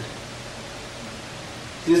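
Steady background hiss with a faint low hum underneath, unchanging through a pause in a man's speech; his voice comes back right at the end.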